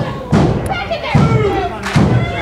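Three heavy, evenly spaced thuds, about one a second, with voices shouting around them.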